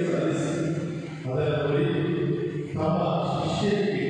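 Voices singing a slow liturgical chant at Mass, in held phrases with short breaks between them.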